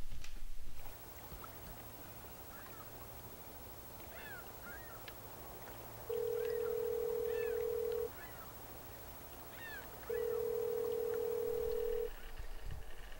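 Birds chirping outdoors, with a telephone ringback tone heard twice, each ring a steady two-second tone with four seconds between them. The outgoing call is ringing on the other end. A second of indoor noise comes before it.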